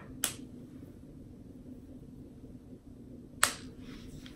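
Two sharp clicks about three seconds apart, a plastic hair clip snapping shut in the hair, over faint room tone.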